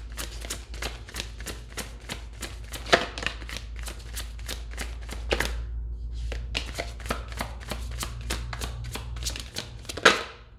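A tarot deck being shuffled overhand by hand: a quick run of card-on-card flicks and snaps, several a second, easing off briefly about six seconds in, with a louder snap at the end. A low steady hum runs underneath.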